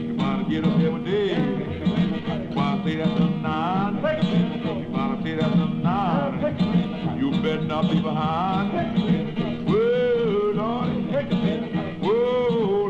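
Blues harmonica playing an instrumental break in a folk-blues song, full of swooping bent notes, over a steady strummed backing.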